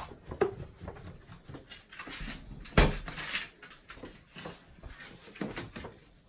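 Staffordshire bull terrier rummaging for the post at the front door: scuffling and rustling in short bursts, with one sharp knock about three seconds in.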